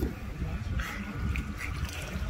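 A small dog whining briefly: one short high whine just under a second in, followed by two faint short squeaks.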